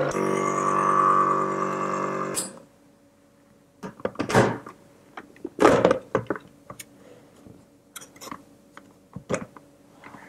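Electric ice cream maker's motor running with a steady hum while its paddle churns the mixture in the frozen bowl, stopping suddenly after about two seconds. Then several hollow plastic clunks and clicks as the motor unit and lid are handled and lifted off.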